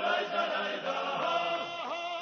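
A choir chanting slowly in harmony, several voices holding long notes together and moving to a new chord about once a second.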